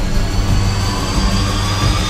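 Trailer sound design building up: a dense low rumble under a high whine that slowly rises in pitch throughout.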